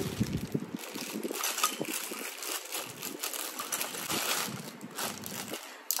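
Plastic packaging crinkling and rustling as a new tripod is unwrapped by hand, an irregular run of crackles.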